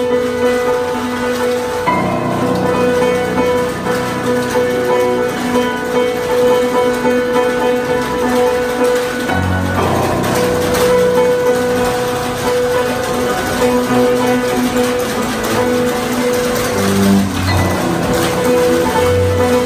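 Free improvised music: a bowed double bass and an electric guitar sustain droning notes, with deeper notes entering a couple of seconds in and again around halfway. Tap shoes strike a wooden platform in quick, scattered clicks.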